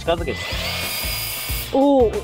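Cordless battery-powered pressure washer running, a steady motor whine over the hiss of the water jet. It starts about half a second in and cuts off near the end, where a voice calls out.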